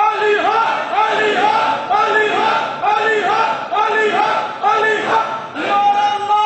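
A crowd of men shouting a rhythmic chant together in a hall, about two shouts a second, the pattern breaking off near the end.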